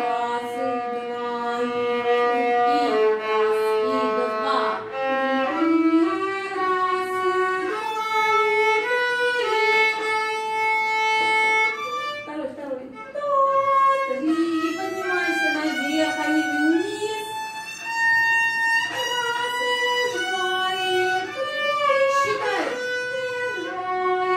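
A violin played by a young student, bowing a slow melody of held notes that change pitch every second or two.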